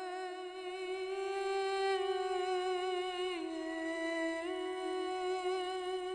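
A single voice humming long held notes on the soundtrack: one steady note that steps down about three and a half seconds in and returns to the first pitch about a second later.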